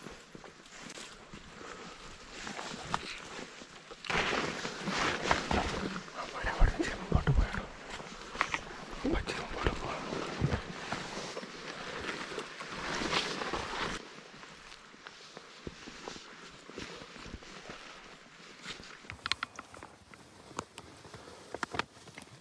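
Footsteps crunching along a frosty hillside track, with scrub brushing against clothing and gear. The rustling is loudest through the middle stretch, with a few heavy low thumps about seven seconds in, and quieter in the last third.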